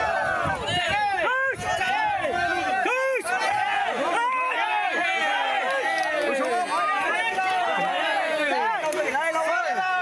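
Crowd of spectators, many men's voices shouting and calling out over one another, keeping up steadily.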